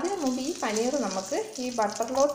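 Butter and oil sizzling in a kadai with a steady hiss, heard under a person talking.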